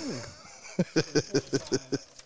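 A man laughing, with a quick run of about seven short bursts in the second half.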